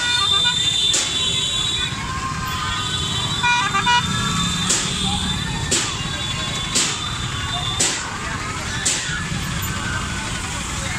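Street procession din: a crowd's voices over motorcycle and traffic noise, with a short horn toot about three and a half seconds in. From about halfway, a sharp beat recurs roughly once a second.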